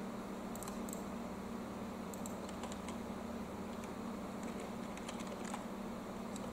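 Typing on a computer keyboard: a few faint, irregularly spaced keystrokes, over a steady low hum.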